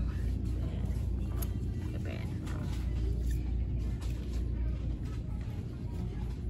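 Shop background sound: music playing and faint voices over a steady low rumble.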